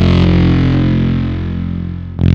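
Intro theme music: a distorted electric guitar chord rings out over a deep bass note and slowly fades.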